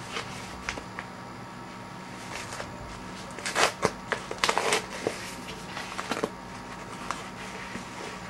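Paper and plastic packaging rustling and crinkling as a mail package of trading cards is handled and opened, with a louder run of crinkling and tearing about three and a half seconds in. A faint steady electrical hum lies underneath.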